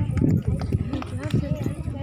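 Voices talking over a quick, irregular run of knocks and thumps.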